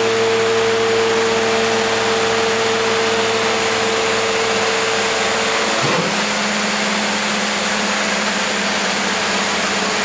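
Hydraulic power unit of a 170-ton multi-opening laminating press running under a steady hiss, its pump giving a steady whine while the platens rise. About six seconds in, as the press closes fully and comes up to tonnage, the whine drops abruptly to a lower steady tone.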